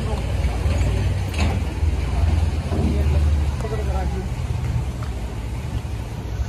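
Mahindra 265 DI tractor's three-cylinder diesel engine idling steadily.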